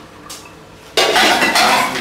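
A loud clatter of kitchenware, dishes and utensils knocking together, starting about halfway through and lasting about a second.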